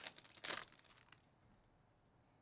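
Foil wrapper of a Panini Mosaic basketball card pack being torn open, with short crinkling tears at the start and about half a second in, and a few smaller crackles just after.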